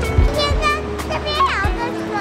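Background music with a young child's high-pitched voice calling out excitedly in short bursts.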